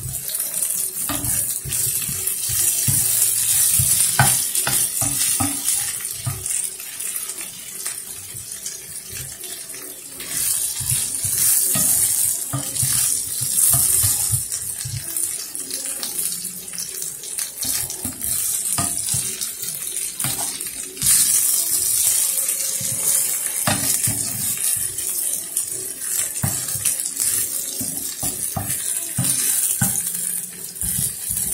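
Marinated beef strips sizzling in a hot nonstick frying pan, a steady hiss with many small crackles and pops, surging louder twice. A wooden spatula stirs the meat in the pan near the end.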